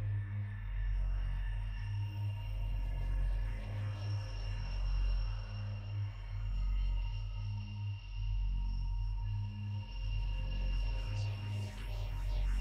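Electronic acid-techno track with a deep bass pulse repeating about every two seconds under long, steady high synth tones.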